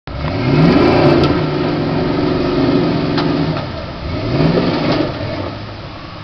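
A big-block Chevy 454 V8 in a 1985 GMC 4x4 pickup revving hard as the truck drives through a muddy puddle, with the revs climbing once near the start and again about four seconds in, and dropping off near the end.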